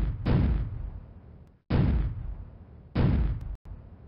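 Firework bursts going off one after another, about one a second. Each is a sudden bang that fades away over a second or so, and one is cut off short just before a weaker bang near the end.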